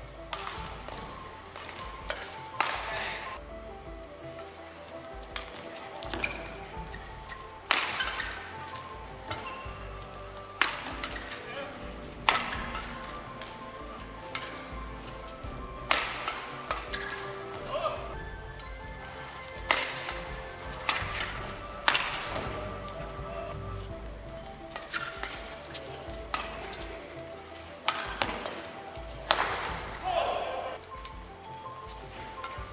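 Badminton rackets striking a shuttlecock in a doubles rally: sharp, crisp hits at irregular intervals, about one every one to four seconds.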